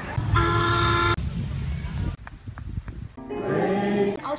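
A boat horn gives one steady toot lasting under a second, a little way in. Singing voices come in near the end.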